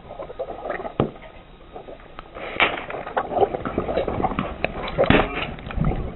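Car tyre rolling over water-bead-filled squishy balls, squashing and bursting them: wet squelching and crackling with sharp pops, sparse at first and becoming dense and louder about halfway through.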